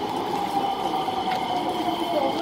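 Metro train running, heard from inside the carriage: a steady running noise with several steady whining tones.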